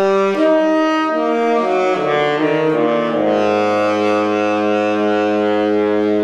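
Tenor saxophone played through a Vandoren T35 V5 mouthpiece: a falling run of short notes over the first three seconds or so, then a long, low held note.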